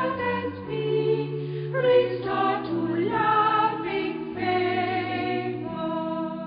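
A choir singing slow, sustained chords that change about once a second over a steady bass line.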